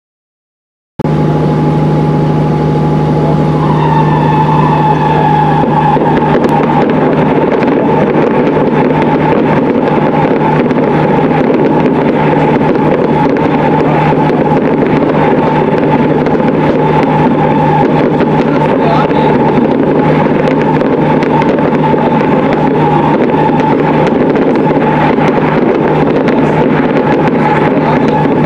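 Fireworks display finale: crackling over a loud, steady horn-like drone that begins about a second in, with a few gliding tones a few seconds later.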